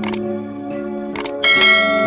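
Soft background music with the sound effects of a subscribe-button animation: a quick double mouse click at the start, another double click about a second later, then a bright bell chime ringing out, the loudest sound.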